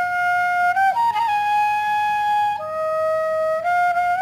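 Bamboo bansuri flute playing a slow phrase of long held notes, ornamented with a quick grace-note flick about a second in before settling on a higher note. Near the end of the phrase it steps down to a lower note, then climbs back up.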